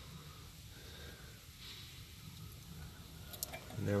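Quiet: a faint low hum, with one brief soft hiss about halfway through and a couple of faint ticks near the end.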